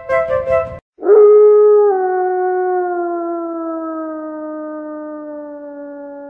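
A few keyboard notes of music stop just under a second in; then a single long wolf howl begins, loudest at its start, sliding slowly and steadily down in pitch as it fades.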